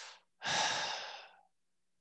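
A person's breath, like a sigh: two breath sounds, the second longer, fading out about a second and a half in.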